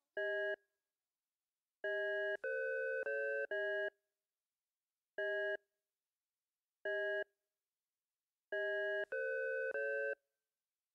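Electronic chord stabs from a breakbeat hardcore track's outro: short, steady synthetic chords that start and stop abruptly, with silences between them. There is one stab near the start, a quick run of four about two seconds in, two single stabs in the middle, and a run of three near the end.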